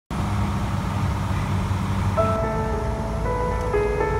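Piper Saratoga's piston engine and propeller, a steady drone heard from inside the cockpit. About two seconds in, background music with held, changing notes comes in over the engine noise.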